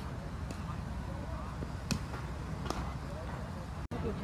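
Cricket net practice: faint voices over a steady low outdoor rumble, with two sharp knocks of a cricket ball, about two and nearly three seconds in. The sound cuts out for an instant just before the end.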